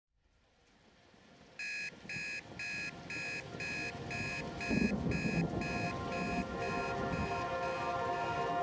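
Digital alarm clock beeping: a steady run of short, high electronic beeps about twice a second, starting about one and a half seconds in and growing fainter near the end.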